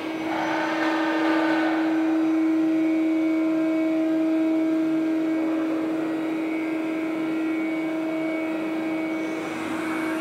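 A steady mechanical hum on one held tone, with a rush of noise from about half a second to two seconds in.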